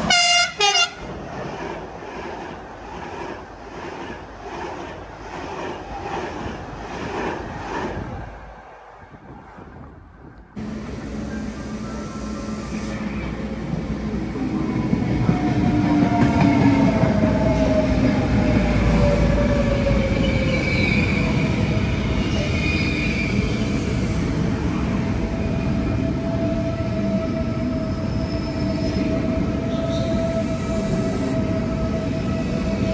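An electric train horn sounds briefly as a red locomotive-hauled train approaches, followed by its rolling rumble with a regular beat. After a break, a CP Alfa Pendular tilting electric train pulls out of a station, its running noise growing louder with a gliding electric whine.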